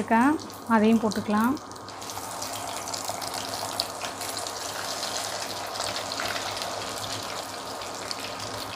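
Vermicelli-coated potato cutlets deep-frying in hot oil, a steady bubbling sizzle. A voice is heard in the first second and a half, before the sizzle is left alone.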